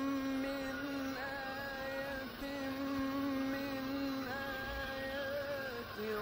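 Background music: a slow melody of long held notes that bend slightly in pitch, changing note every second or two and sliding down near the end.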